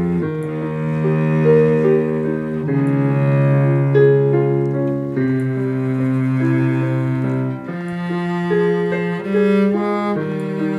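Cello bowing long sustained low notes under piano chords played on a Yamaha digital keyboard, the cello's note changing every two or three seconds. An instrumental introduction with no singing.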